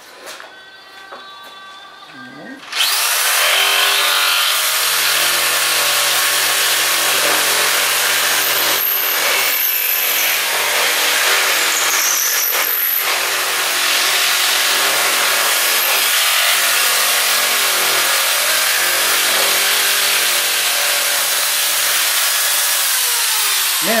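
Corded electric fiber-cement shears (Hardie shears) start about three seconds in and run steadily as they snip across an asbestos-cement shingle, with a few brief dips in the motor sound midway.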